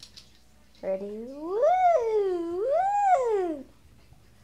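A cat's long drawn-out meow, its pitch rising and falling twice over nearly three seconds.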